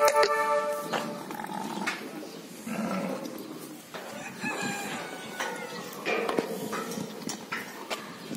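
Farm animal calls: a loud drawn-out pitched call in the first second, followed by several fainter calls.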